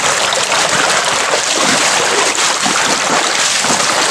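Shallow river running steadily over stones, a loud even rush of water.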